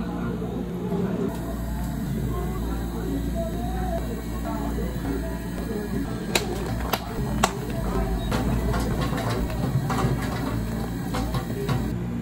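Metal serving tongs clicking as garnishes are placed on iced drinks: three sharp clicks about six to seven and a half seconds in, then a quicker run of lighter clicks, over a steady low hum of cafe equipment.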